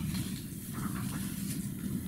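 A low, steady rumbling noise with no clear pitch, fitting a fiery crash.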